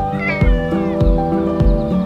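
A cat meowing once, a short gliding cry shortly after the start, over background music with a steady beat.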